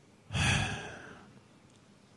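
A man's heavy sigh into a close microphone: one breathy exhalation about a third of a second in, loud at first and fading out over about half a second.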